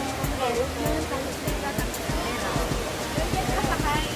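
Music and voices over the steady rush of an indoor waterfall, with a regular low beat.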